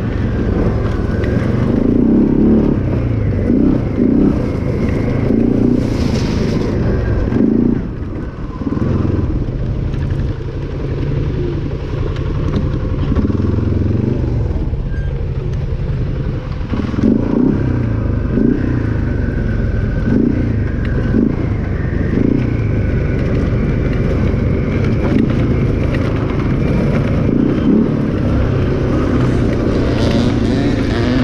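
ATV engine running while the quad is ridden along a gravel trail, its engine note rising and easing with the throttle. It is heard close up from the handlebars.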